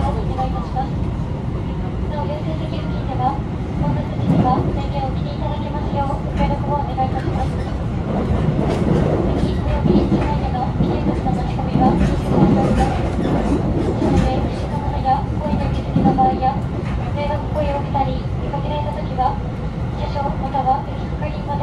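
Running noise of a JR Tokaido Line rapid train heard from inside the passenger car: a steady low rumble, with the wheels knocking over points and rail joints, louder through the middle.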